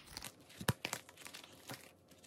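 Plastic snap-button envelope being handled and opened: light crinkling of the plastic with a few sharp clicks, the loudest about two-thirds of a second in.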